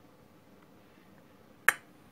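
A single sharp click near the end, over quiet room tone.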